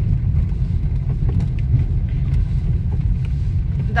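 Car cabin noise while driving slowly over a potholed road: a steady low rumble of engine and tyres, with a few faint knocks about a second in.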